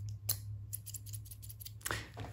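Scissors opening and closing close to the microphone: a quick, irregular run of crisp clicks and snips, loudest about a third of a second in and again just before the end.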